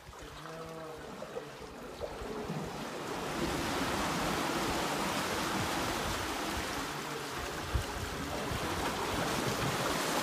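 Earthquake-triggered seiche waves surging through a narrow rock-walled pool, the water sloshing and bouncing off the rock walls. The rush of water swells about three seconds in and then stays steady, with one sharp splash or knock near the end.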